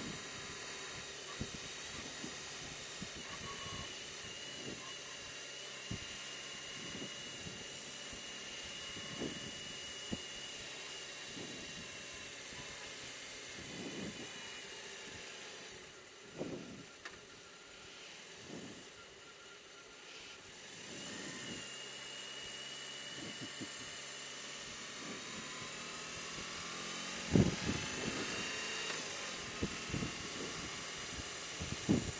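BMW R18 Transcontinental's boxer twin running while under way, heard faintly under road and wind noise with a steady high whine. It goes quieter for a few seconds a little past the middle, and a louder burst comes about three seconds before the end.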